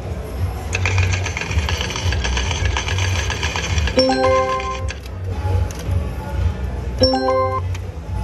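A slot machine's ticket printer rattles rapidly for about three seconds as it prints a cashout voucher. Twice, about three seconds apart, the machine then sounds a multi-note alert chime that signals the voucher is ready to be taken from the printer. Under it runs a steady low casino hum.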